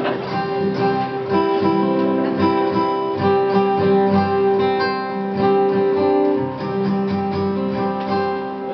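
Acoustic guitar playing an instrumental lead-in to a song, picked and strummed notes ringing in steady chords.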